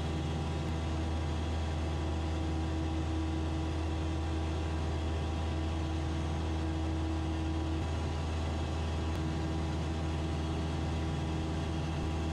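Single-engine RV-8 propeller plane's engine and propeller in steady cruise, heard from inside the cockpit as an even, unchanging drone. A slightly higher steady hum runs along with it for a few seconds in the middle.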